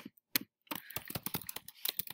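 Typing on a computer keyboard: a couple of separate clicks in the first half second, then a quick run of key clicks from about two-thirds of a second in as a word is typed.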